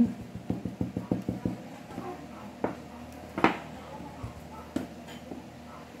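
Light taps and soft knocks on a wooden worktable while gumpaste is dusted with a cornstarch pouch and rolled thin with a rolling pin. A quick run of taps comes in the first second and a half, then a few scattered single knocks.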